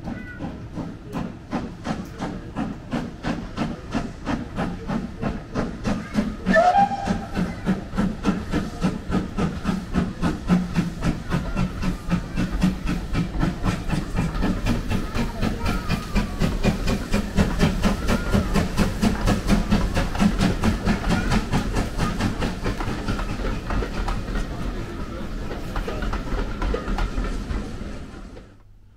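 Steam locomotive working a train, its exhaust chuffing in a steady beat and growing louder as it approaches. It gives one short whistle about six and a half seconds in.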